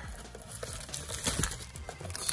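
Plastic shrink wrap being torn and peeled off a trading card box, crinkling and crackling irregularly.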